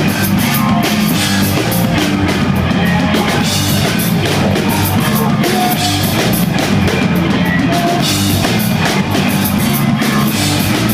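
A rock band playing live at full volume: electric guitar over a bass line and a driving drum kit with steady cymbal hits.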